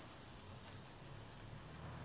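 Quiet room tone: a faint steady hiss and low hum, with no distinct sound standing out.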